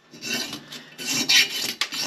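Rasping strokes of a metal lawn mower part being scrubbed clean by hand. Several strokes follow one another, the loudest near the middle.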